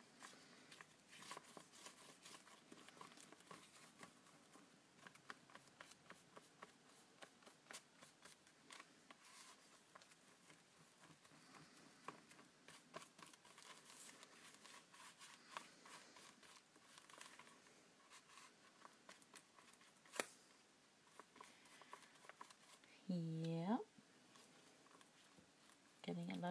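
Faint rustling and small clicks of paper being handled, folded and pressed by hand. A brief voiced 'hmm' comes near the end.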